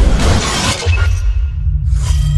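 Intro sting: a glass-shatter sound effect over music, the crash dying away about a second in, leaving a low, steady bass note.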